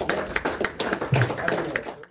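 Scattered clapping from a small audience right after a live band stops playing, with voices murmuring underneath.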